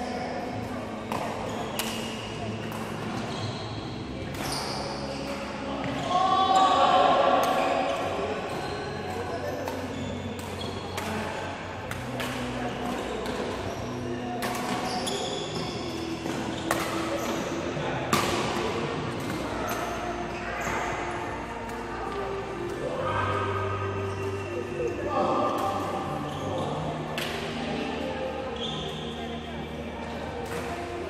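Badminton rackets striking shuttlecocks again and again at an irregular pace during court drills, sharp hits ringing in a large hall, with people talking in the background.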